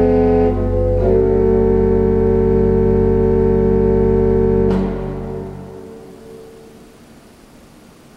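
Pipe organ holding a full closing chord over a deep pedal bass, moving to a new chord about a second in and releasing near five seconds. The sound then dies away in the church's reverberation, leaving quiet room tone.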